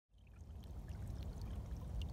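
A small, shallow stream trickling and splashing over stones and fallen leaves, fading in from silence at the start.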